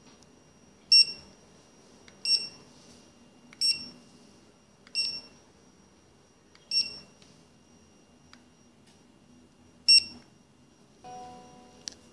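Generalscan M500BT-DPM handheld barcode scanner giving six short, high-pitched beeps at irregular intervals, the good-read signal as it decodes printed DataMatrix codes. A lower, longer tone sounds near the end.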